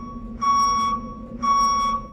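Reversing-vehicle backup beeper used as a sound effect: a steady electronic beep repeating about once a second, over a steady low hum.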